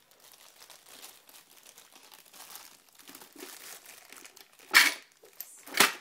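Plastic bag crinkling and rustling as it is handled, then two loud sharp knocks near the end, a second apart.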